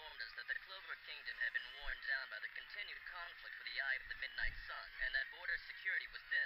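Speech: a voice talking almost without pause, with a thin, muffled sound.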